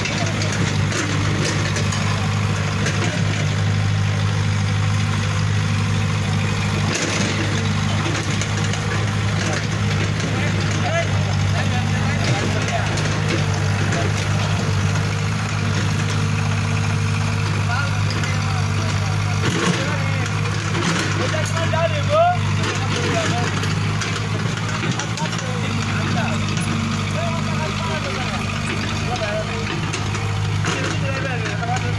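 Diesel engine of a Sonalika tractor running at a steady speed as it pulls a trailer, a constant low hum with no revving.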